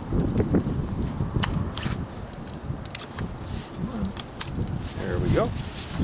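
Scattered clicks and knocks with rustling as a drill bit is handled and fitted; no drill is running. A brief mumbled voice comes in about five seconds in.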